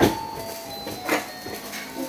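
Two knocks about a second apart, the first the louder, from goods and bags being handled in a storeroom.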